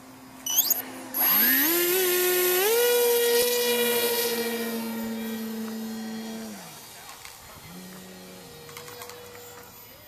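Electric motor and propeller of a foam RC flying wing spinning up about a second in with a whine that rises steeply in pitch, then holding a steady high whine that slowly fades as the plane flies off. About six and a half seconds in the whine drops in pitch and dies away. A brief loud noise comes just before the motor starts.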